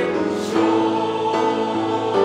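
Mixed school choir of girls and boys singing a slow passage in held chords, the notes changing to new pitches about every second.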